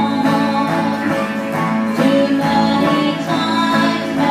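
Live country band playing a honky-tonk song: acoustic and electric guitars strumming and picking steadily, with a woman singing the lead.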